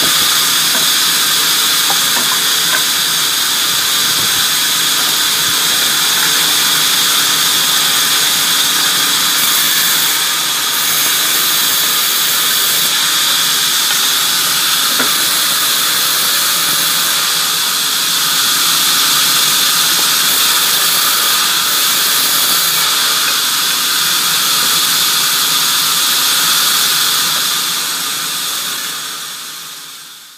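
Sawmill band saw running steadily as timber planks are fed through it, a loud continuous whine with a high hiss. The sound fades out near the end.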